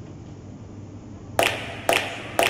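Background music: after a quiet stretch, a track begins with two sharp percussive hits about half a second apart, late on.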